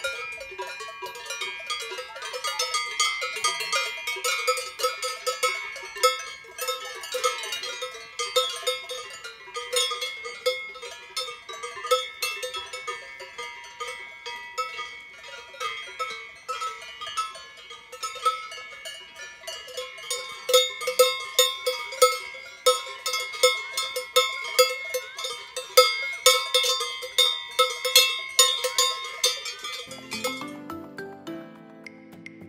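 Several cowbells on grazing cows clanking irregularly and without pause as the cattle move, bells of different pitches ringing over one another.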